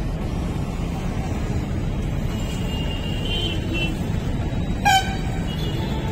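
Steady street traffic rumble with a short vehicle horn toot about five seconds in.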